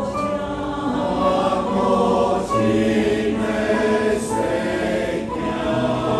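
Mixed-voice church choir singing a sacred anthem in sustained, held chords.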